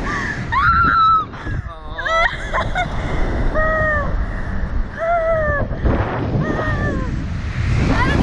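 Two riders on a reverse-bungee slingshot ride shrieking and laughing in a string of high, arching cries, one about every second, while the wind rushes over the on-board microphone with a low rumble.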